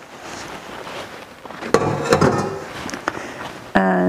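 Knocks and clunks from handling a tilt-head stand mixer and its steel bowl after the motor has been stopped. Near silence for about the first second and a half, then a loud cluster of knocks around two seconds in and a couple more after.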